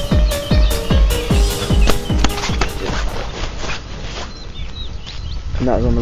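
Electronic dance music with a steady kick drum, about two and a half beats a second, that stops about three seconds in. It gives way to quiet outdoor ambience with a few short bird chirps before a voice begins near the end.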